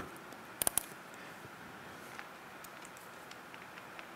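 A quick cluster of three sharp clicks about half a second in, from a digital multimeter being picked up and handled on a workbench.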